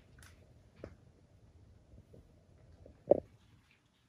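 Quiet room tone in an empty building, with a faint short sound about a second in and a brief, louder sound about three seconds in.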